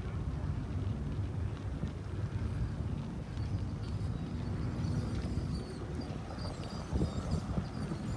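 Strong dust-storm wind buffeting the microphone: a steady, fluttering low rumble, with a few light knocks near the end.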